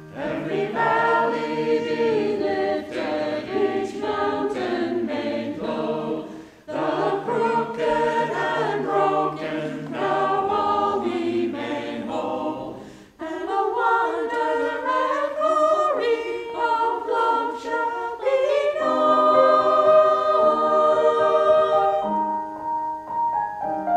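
Mixed choir of men and women singing in parts, breaking off briefly between phrases twice.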